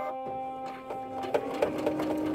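Baby Lock Soprano computerised sewing machine starting to stitch, a rapid run of needle ticks under a steady motor hum beginning about a second in. It is starting its seam with the automatic reinforcement (lock) stitches switched on.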